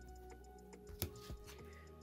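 Faint background music under light clicks and taps of rigid plastic card holders being handled, with one sharper click about a second in.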